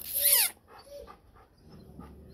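German Shepherd dog giving one short, high whine that falls steeply in pitch at the start, followed by faint small sounds.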